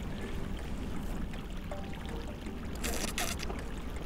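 A steady low rumble, with two short splashing noises about three seconds in as hands go down into a shallow seep of surface water and wet mud.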